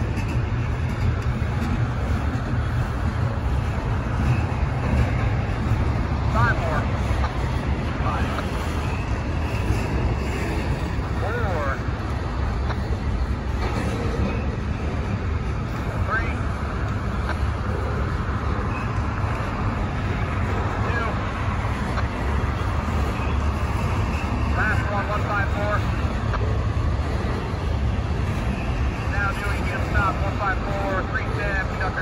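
Double-stack intermodal freight train rolling past: steady noise of steel wheels on rail over a constant low rumble, with faint short higher sounds coming and going over it.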